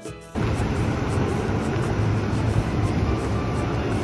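Background music stops abruptly a moment in, giving way to steady outdoor street noise: a low rumble with a hiss over it.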